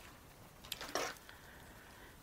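Brief rustling and clicking of a clear plastic clamshell pack being picked up and handled, two or three short sounds about a second in, otherwise quiet.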